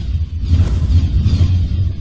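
Cinematic logo-intro sound effect: a deep, steady rumble with airy whooshes sweeping over it.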